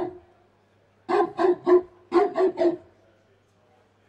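Dog barks in two quick runs of three, about a second in and again just after two seconds, then quiet.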